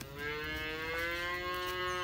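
A cow mooing: one long call of about two seconds, its pitch rising slightly.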